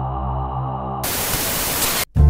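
Sustained ambient background music with a low drone. About a second in, it gives way to a burst of hissing static noise, a transition effect, which cuts off suddenly at the end.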